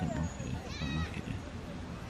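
Muffled, indistinct voices, with a short high wavering warble about a second in.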